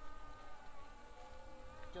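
A flying insect buzzing: a faint, thin hum that wavers slowly in pitch.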